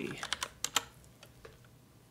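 A handful of quick computer-keyboard keystrokes in the first second, typing a value into a parameter field, then faint room tone.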